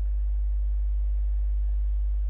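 Steady low electrical hum with no other sound standing out.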